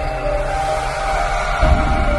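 Intro music: held high tones over deep low hits, one of them about one and a half seconds in.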